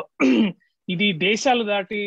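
A man speaking over a video call, in two short stretches with a brief pause about half a second in.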